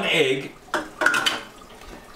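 A couple of brief clinks of kitchen utensils and dishes after a spoken word, while batter ingredients are measured out.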